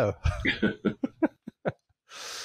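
A man laughing: a string of short chuckles that grow shorter and fainter and die away before the end.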